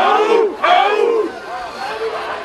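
A group of voices shouting and whooping together in overlapping, rising-and-falling calls, loudest in the first second or so, then dropping back to softer crowd voices.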